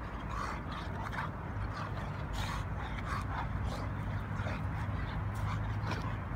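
Two dogs, a Dogue de Bordeaux and a bulldog-type dog, play-wrestling, giving a string of short vocal sounds every half second or so. A steady low rumble runs underneath.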